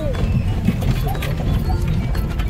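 Vehicle rolling slowly over a rough, stony dirt road, heard from inside the cab: a steady low rumble of engine and tyres with frequent small knocks and rattles from the bumps. Music plays underneath.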